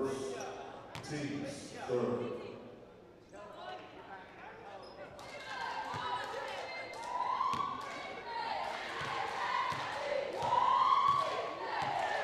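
Voices calling out in an echoing gymnasium during a basketball game, with a basketball bouncing on the hardwood floor. The voices grow louder about halfway through.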